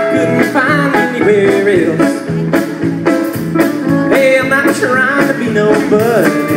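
Live country rock band playing an instrumental passage over a steady beat, with a lead line of bending, sliding notes.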